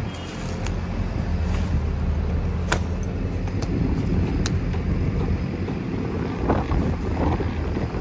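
Kubota U55-4 mini excavator's diesel engine idling steadily, with a few sharp metallic clinks as a hand tool strikes the bucket linkage.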